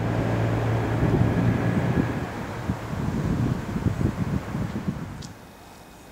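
A motor vehicle's engine running close by: a low steady hum with an uneven rumble, which drops away about five seconds in, leaving quieter street ambience.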